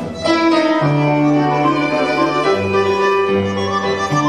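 Live tango ensemble playing: a violin carries sustained melody notes over long double-bass notes, with bandoneon and piano, after a brief break in the phrase right at the start.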